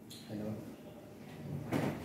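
Low, faint voices in a small room, with one short, sharp noise like a knock or shuffle near the end.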